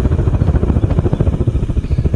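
Propane-fired melting furnace running: the burner gives a loud, steady low rumble.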